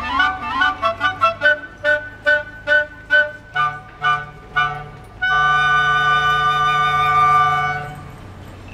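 Flute and clarinet ensemble playing a run of quick, separated notes, then, about five seconds in, a long held final chord that dies away just before the end.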